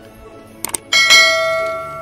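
Sound effect of a subscribe-button animation: a short click, then a notification bell chime about a second in that rings on and slowly fades.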